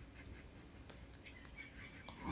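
Near silence: faint room tone with a few faint small ticks from handling paper and a glue stick.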